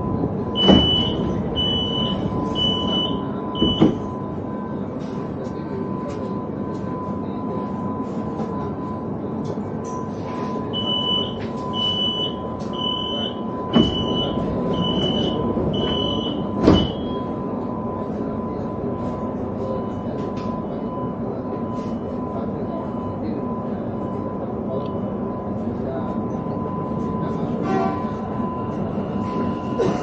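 Door warning beeps of a Sarmiento line electric commuter train standing at a station. A short run of high, evenly spaced beeps comes about a second in. A longer run starts about ten seconds later and ends in a sharp thud as the doors shut. Under it all is a steady electrical tone and hum.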